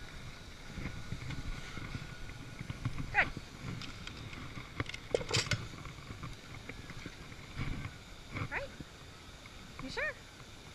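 Outdoor camera audio of a sea lion training session: a steady low rumble of wind and handling on the microphone, a few short spoken cues from the trainer, and a cluster of sharp clicks about five seconds in.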